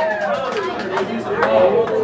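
Several people talking over one another now the band has stopped playing, with a few sharp knocks and clicks among the voices.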